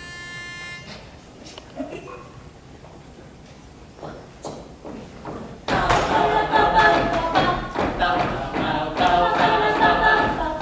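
Female a cappella group starting a song: a brief steady high note at the start, a quiet pause, then about six seconds in the voices come in together, loud and full, singing in harmony without instruments.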